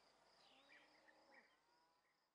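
Near silence: faint field ambience, with a thin steady high insect buzz and a few faint bird chirps.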